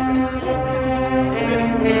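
Marching band's brass playing long held chords, the notes changing about a second and a half in.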